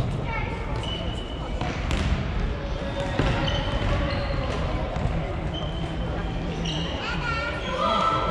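Futsal match play on a wooden sports-hall floor: the ball kicked and bouncing with a couple of sharp knocks, shoes squeaking in short high bursts, and players' voices over the busy, echoing hall.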